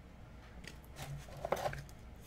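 Faint clicks of hard plastic graded card cases (PSA slabs) being handled and flipped through in a cardboard box, over a low steady hum.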